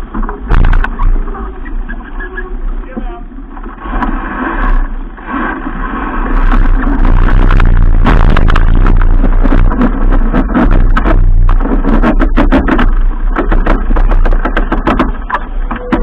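Wind buffeting the microphone of a camera on a keelboat sailing hard upwind, over the rush of water and spray along the hull. Repeated knocks and rubbing come through as a crew member's jacket presses against the camera. The wind and knocking get louder and busier about halfway through.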